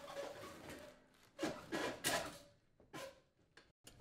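A dishwasher being slid back into its cabinet opening: three spells of scraping and rubbing as it is pushed, the first two about a second long, the last short.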